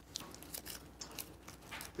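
Quiet room tone with a steady low hum and a few faint, scattered clicks.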